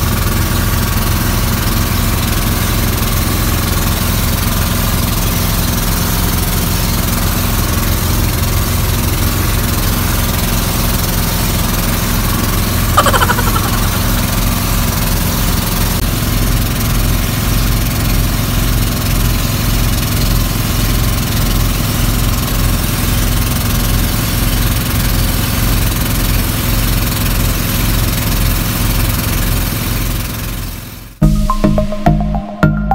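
Outrigger boat's engine running steadily as the boat travels over open sea. A short falling sound cuts through about halfway through.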